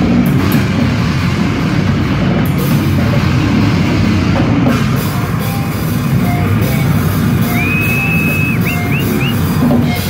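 Death-grind band playing live: drum kit with cymbals under heavily distorted guitar and bass, loud and dense. Near the end a high-pitched squeal rises and holds for about a second, then three short squeals follow.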